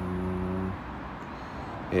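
A man's brief, steady hummed "mmm" on one low pitch, held for under a second, then quiet outdoor background.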